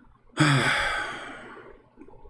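A man's loud sigh close to the microphone: a brief voiced start about half a second in, then a breathy exhale that fades away over about a second.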